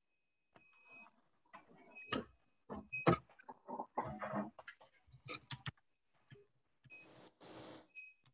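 Several short high-pitched electronic beeps, the first and longest near the start and shorter ones scattered after, over faint choppy background noise coming through a video-call line.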